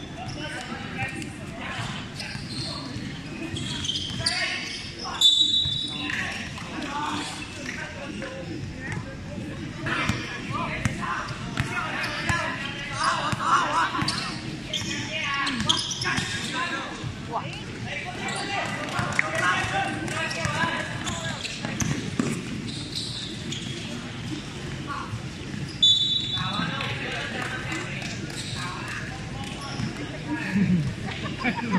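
Basketball being dribbled on a hard court amid players' and spectators' voices calling out, in a large open hall. Two short, sharp referee whistle blasts sound about five seconds in and again near the end.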